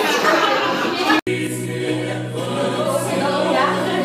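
A choir singing sustained chords. About a second in, a short stretch of talk cuts off abruptly and the singing takes over.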